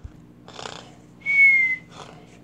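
A person whistling one short, high, steady note that dips slightly at its end, about a second in, after a soft breathy rush of air.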